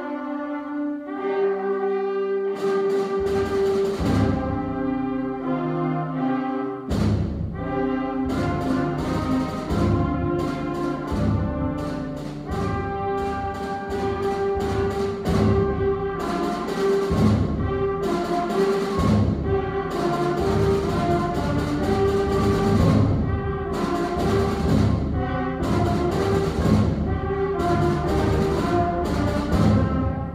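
A sixth-grade concert band of woodwinds and brass playing, with held notes over a steady beat of sharp hits. The low instruments come in fuller about seven seconds in.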